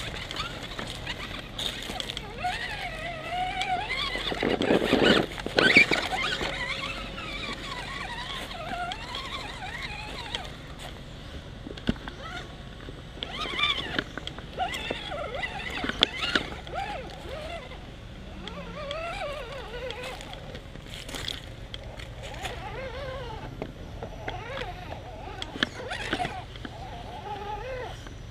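RC rock crawler's small electric motor and gears whining, the pitch rising and falling with the throttle, with scattered knocks and clatter as the truck climbs over wooden boards and rocks.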